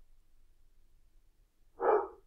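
Near silence, then a dog barks once near the end.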